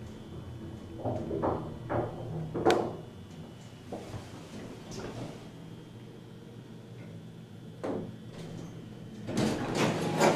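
ThyssenKrupp hydraulic elevator car descending with a steady hum and a faint high whine, with a few knocks early on. About eight seconds in there is a thump as the car stops, and near the end the car doors slide open.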